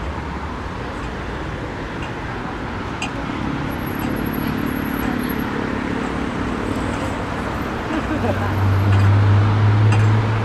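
City street traffic at a busy intersection: a steady wash of passing cars and tyre noise. Near the end a large vehicle's low engine hum swells and becomes the loudest sound.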